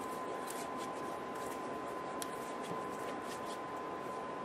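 Hands rubbing lotion into the skin: faint, soft skin-on-skin rubbing over a steady background hiss and a thin steady high tone.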